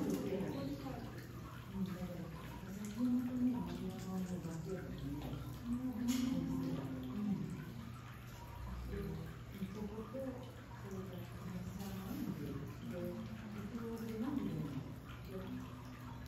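Indistinct voices of people talking, low in level, over a steady low hum.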